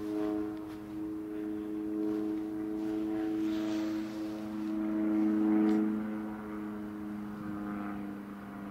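Light propeller aircraft flying overhead: a steady engine drone that swells to its loudest about five and a half seconds in, then eases off.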